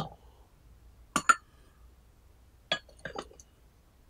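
Glass teaware clinking as a glass tea pitcher is set down and a tea strainer is laid on its rim: one clink at the start, a quick double clink a little over a second in, and a clink followed by several lighter ones near the end.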